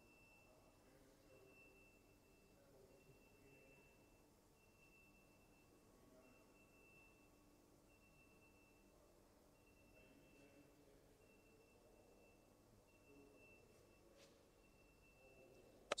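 Near silence: room tone, with a faint high tone pulsing on and off a little more than once a second.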